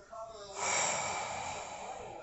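Bull terrier blowing a hard breath out through its nose, a rush of air that starts about half a second in and fades over about a second.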